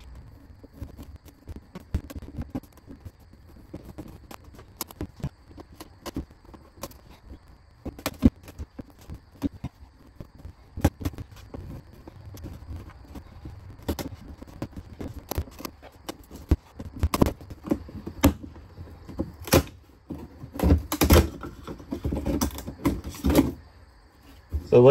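Utility knife blade scoring and cutting through a thin laminated wood wall panel: irregular scraping strokes and clicks, coming faster and louder near the end.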